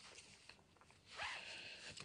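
Near silence, then a faint, short breath-like noise in the second half, just before the woman speaks again.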